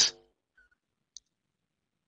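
Near silence broken by one short, faint click from a computer mouse about a second in.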